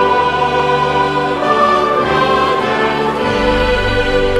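Choral music with orchestra: a choir holding sustained notes over the instruments, with a deeper bass note coming in near the end.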